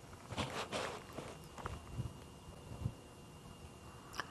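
Faint, irregular rustling and a few soft knocks under a faint, steady, high-pitched tone.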